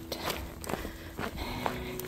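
Footsteps on a gravel and dirt path, a walker's stride heard faintly under low outdoor background noise.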